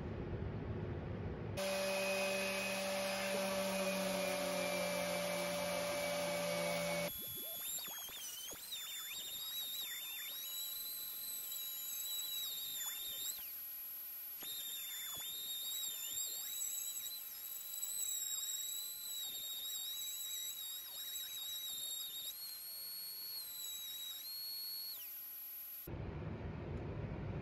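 Electric random orbital sander running with a high-pitched whine that wavers and dips in pitch, as happens when a sander is pressed and eased on the work. For the first few seconds a lower, steadier motor hum is heard instead.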